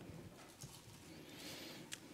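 Near silence: faint room tone with a few soft clicks and knocks, one slightly sharper near the end.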